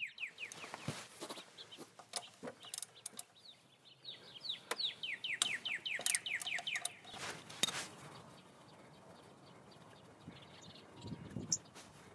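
A bird chirps in two runs of quick, downward-sliding notes, while a socket ratchet wrench clicks as it loosens the 12 mm oil-level check bolt on a scooter's final drive housing.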